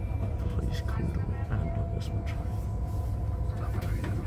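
Steady low rumble of a moving passenger vehicle heard from inside the cabin, with a faint steady hum over it and a few light clicks and rattles.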